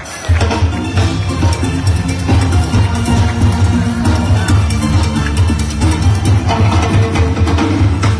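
Live band music with drums and percussion over a heavy, steady bass line, loud, coming in just after the start.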